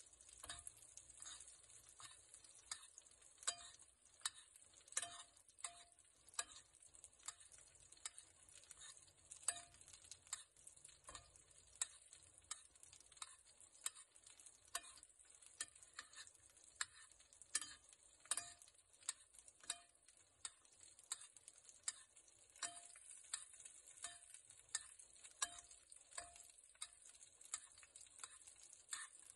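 Steak frying in butter in a stainless-steel pan: a faint steady sizzle, with a metal spoon clinking against the pan a little more than once a second as the butter is spooned over the meat.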